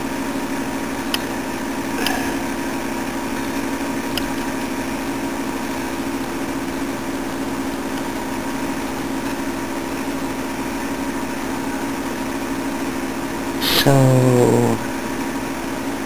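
Steady machine hum with several fixed tones, unchanging throughout, with a few light clicks about one, two and four seconds in.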